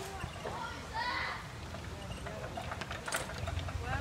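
Brief voice sounds about a second in, then a quick cluster of sharp clicks a little after three seconds, with a low rumble building near the end.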